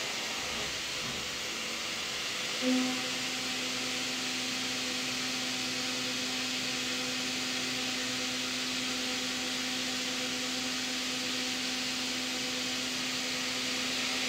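CNC mill slotting 1045 steel with a solid carbide end mill at 3820 rpm: a steady hiss, joined about three seconds in by a steady low hum from the cut that swells briefly as it starts and then holds.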